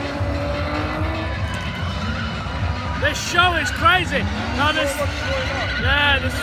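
Car tyres squealing in quick repeated chirps from about three seconds in, with the car's engine revving up just before, as the stunt car skids and drifts across the arena.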